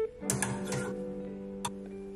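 Background music with sustained guitar-like notes, over which a few sharp, irregular clicks sound: wire or plastic coat hangers knocking on a wardrobe rail as coats are hung.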